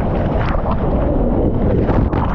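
Loud, steady rush and rumble of a breaking ocean wave and water buffeting a GoPro's microphone, as the surfer rides just under the wave's curling lip.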